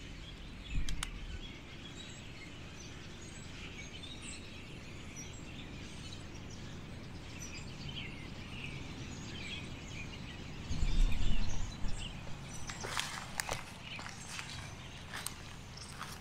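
Small birds chirping and calling repeatedly over a steady outdoor hiss. A short low rumble comes about a second in and a louder one around eleven seconds, and near the end crackling clicks of footsteps in dry leaf litter.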